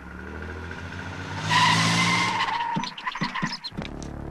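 A car engine running, then tyres squealing loudly for under a second as a car brakes hard, followed by a few short clicks.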